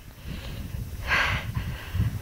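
A short, noisy breath close to the microphone about a second in, over a low rumble of wind on the microphone.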